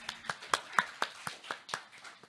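Sparse audience clapping: a few hands giving distinct claps at about four a second, thinning out at the end.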